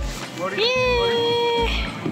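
One long, high-pitched call that rises at its start and then holds a steady pitch for about a second, over background music with a repeating bass beat.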